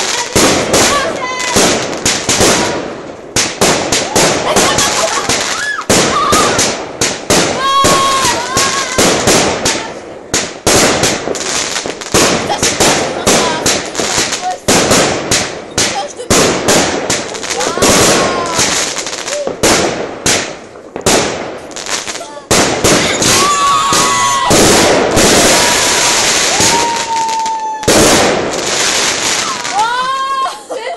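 Consumer fireworks going off in quick succession: a rapid string of sharp bangs and crackles as rockets launch and burst. Short whistles bend up and down several times, and there is a thick stretch of continuous crackling near the end.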